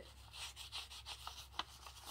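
Paper pages of a small journal being rubbed and fanned between the fingers: a faint, dry rustle with a few small crisp ticks, one clearer tick about one and a half seconds in.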